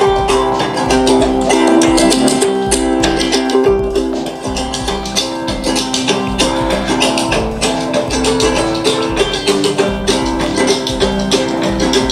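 Music with a steady beat played at maximum volume through a small portable Bluetooth speaker.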